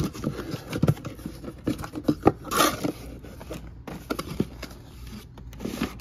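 Cardboard shipping carton being pulled open and blister-carded die-cast toy cars handled inside it: a run of scrapes, taps and knocks, with a louder rasping scrape about two and a half seconds in.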